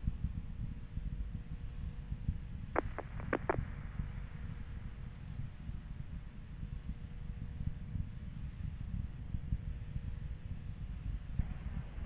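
A low, steady rumble with a faint hum over it, and a few brief blips about three seconds in.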